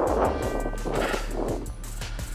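Strong wind buffeting the camera's microphone: an uneven rushing, rumbling noise that eases slightly near the end.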